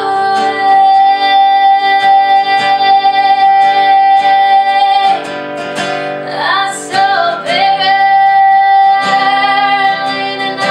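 A woman singing over a steadily strummed acoustic guitar. She holds one long note for about five seconds, moves through a few sliding notes, then holds another.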